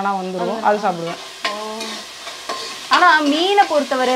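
Fish curry sizzling in a large pot on a gas stove, a metal ladle stirring it, with a woman's speaking voice over it for much of the time.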